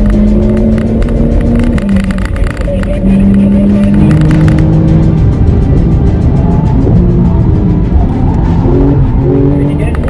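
Music with held notes that step from pitch to pitch, laid over the in-cabin sound of a Porsche 911 Turbo being driven hard on a race track.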